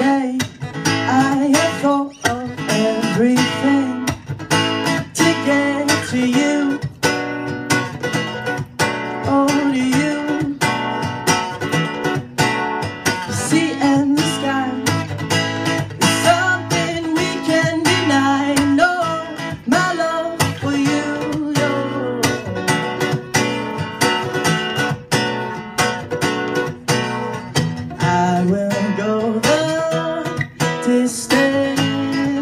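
A cutaway acoustic guitar strummed steadily through a song, with a young man singing over it.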